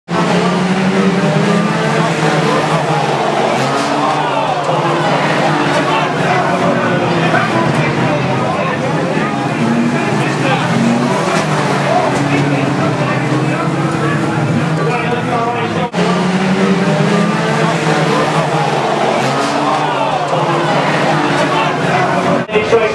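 Several banger racing cars' engines running and revving hard as the pack races round the track, their pitches rising and falling. There is a short break about two-thirds of the way through.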